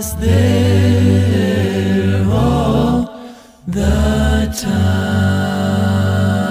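Male a cappella gospel vocal group singing held chords over deep bass voices, with no instruments. Near the middle the sound drops briefly, then a sharp click is followed by a new sustained low chord.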